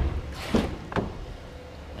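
Front door of a 2015 Chevrolet Equinox being opened: a short knock about half a second in, then a sharp latch click about half a second later.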